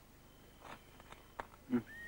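Faint, distant music of a small band, heard as a few high notes that slide up and hold near the end, with a few quiet ticks before them.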